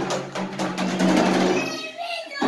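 Empty plastic water-cooler jug juddering across a tile floor as it is pulled, a fast rattling run lasting about a second and a half over a steady low hum.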